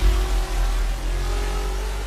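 Synthesized intro sound effect: a deep bass boom sustaining under several steady electronic tones, slowly dying away.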